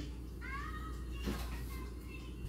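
A cat meowing once, a short high call that rises and then levels off about half a second in.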